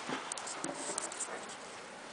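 Faint scratchy rustling with a few light clicks: handling noise from a handheld camera being moved about.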